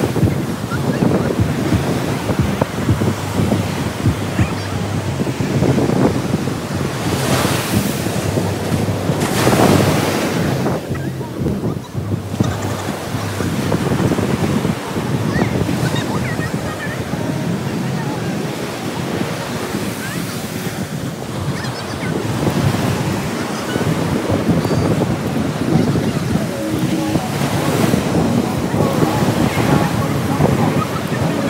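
Surf breaking and washing up a sandy beach, mixed with wind buffeting the microphone, with stronger surges about eight and ten seconds in.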